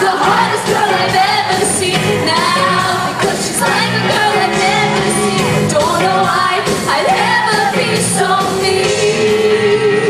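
A live band playing a pop-rock song, with a male lead singer singing over guitars, drums and keyboards.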